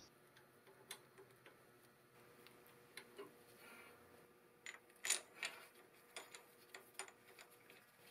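Near silence with a few faint, irregular metallic clicks of hand tools working on the VVT camshaft sprocket as its center bolt is fitted.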